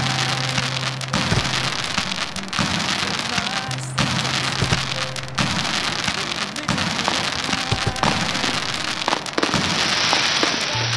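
Fireworks crackling and popping, with frequent sharp bursts, over music.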